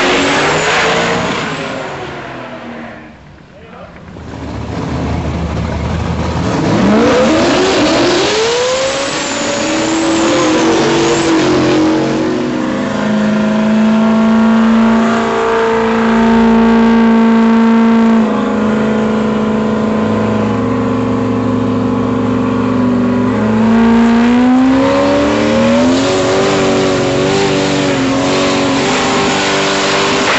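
Single-turbo small-block Chevy V8 of an S10 drag truck. At first it runs hard and fades as the truck pulls away. After a few seconds it revs up and down in several sweeps, then holds steady revs for long stretches with a few sudden steps in pitch, rising again near the end.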